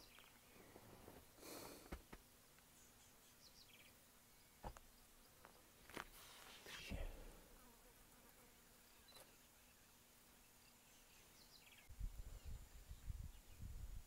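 Near silence: faint open-air ambience with a few soft clicks and, near the end, a low rumble.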